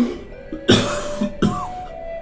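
A man coughing into his fist: three coughs, the loudest about two-thirds of a second in.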